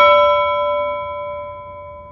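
A single bell-like chime, struck just before and ringing out with several steady overtones, fading slowly and evenly.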